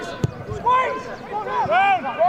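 A football struck once, a sharp thud about a quarter of a second in, amid players' shouted calls across the pitch.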